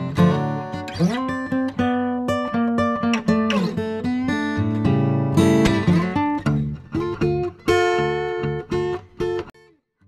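Background acoustic guitar music, a run of plucked and strummed notes, cutting off shortly before the end.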